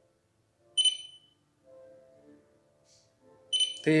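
Phone app's button-press beep: a short, high electronic beep about a second in as an on/off button is tapped, and a second one near the end, with faint lower tones in between.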